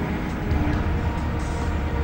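Low, steady rumble with a faint held tone above it.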